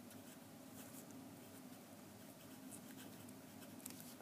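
Faint scratching of a marker writing on a paper worksheet, in a few light strokes.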